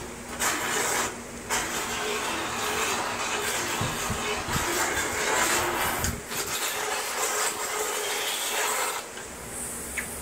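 Motorized equine dental float grinding a horse's teeth, a steady whirring rasp with short breaks about a second in and about six seconds in, quieter in the last second.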